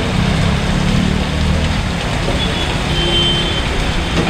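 Steady rain falling on a wet street, with a motorbike engine passing in the first second or so and a brief high beep about three seconds in.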